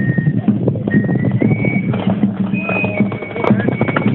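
Hoofbeats of a horse ridden fast on a packed dirt road, coming close near the end, under loud music with a held, stepping high melody.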